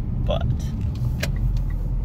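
Steady low rumble of road and engine noise inside the cabin of a moving Mitsubishi Lancer Ralliart, with a single sharp click a little past the middle.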